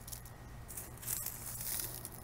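Faint rustling and crackling of dry straw mulch and onion tops being disturbed as the onions are handled.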